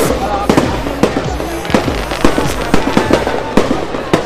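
Fireworks going off: a rapid, irregular run of sharp bangs and crackles, several a second, with voices in the crowd beneath.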